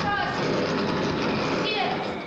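A loud, steady rushing noise that starts suddenly, with a girl's voice reciting over it.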